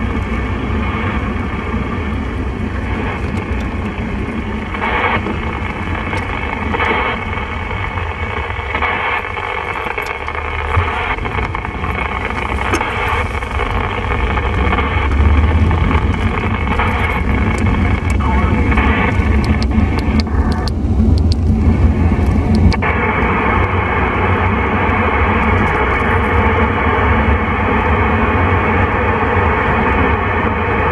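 Steady hiss and crackle of 27 MHz band noise from the speaker of a President Lincoln II+ CB radio, with no station coming through clearly, over the low rumble of the car on the road. The hiss thins out about twenty seconds in and returns abruptly a couple of seconds later. This is the sound of an unanswered CQ DX call during a dip in propagation.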